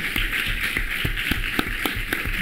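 Audience applauding: many irregular claps.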